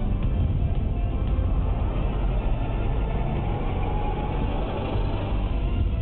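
Television channel ident theme music, dense and steady with a heavy bass.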